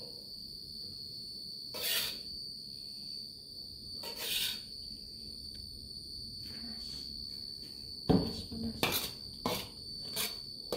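A metal spatula scrapes and stirs fried rice in a metal wok: a few scrapes about two seconds apart, then a quick run of sharp clanks against the wok near the end. A steady high-pitched whine sounds throughout.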